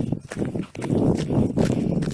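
Footsteps in snow: a person walking steadily along a trodden snow trail, about two steps a second.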